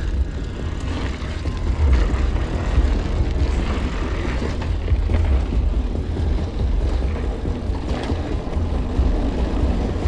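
Wind buffeting the action camera's microphone on a moving mountain bike, a steady heavy rumble, with the tyres running over a loose, stony dirt trail and the bike rattling in short knocks.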